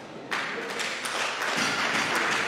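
Audience applauding, breaking out suddenly about a third of a second in and holding steady.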